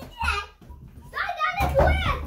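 Children's voices calling out during play: a short burst at the start, then more from about one and a half seconds in.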